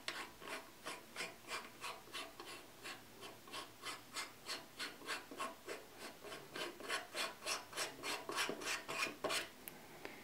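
A Celestron visual back being screwed by hand onto the threaded rear of an f/6.3 focal reducer, giving a short rasp with each twist. The rasps come about three a second and grow a little louder near the end.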